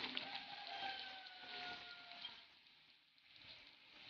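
Faint sizzle with fine crackles from chicken, onion and sliced carrots frying in a wok, dying down almost to nothing about two and a half seconds in.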